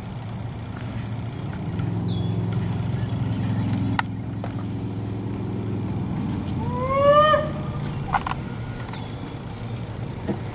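Low steady engine hum that swells in about a second and a half in and fades after about eight seconds. Near seven seconds a short, loud call rises in pitch, and a few faint high chirps come and go.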